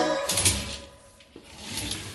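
Hotel-room curtains being pulled open: two short swishes of fabric and sliding curtain runners, the first about half a second in and the second shortly before the end.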